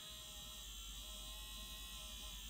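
Small electric motor inside a toy bus music box buzzing faintly as it rocks the bus back and forth on its base.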